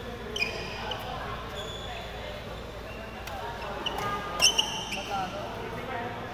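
Badminton shoes squeaking on a wooden indoor court in several short high squeals, the loudest a little past halfway, mixed with sharp clicks of rackets hitting shuttlecocks and the chatter of players.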